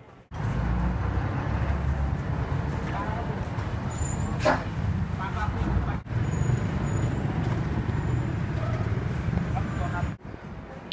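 Open-air street-market ambience: a steady low rumble of traffic with scattered voices in the background, and one sharp click about four and a half seconds in.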